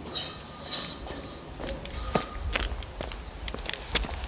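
Footsteps of a person walking down metal loading ramps and across concrete: a run of irregular knocks, a few seconds long.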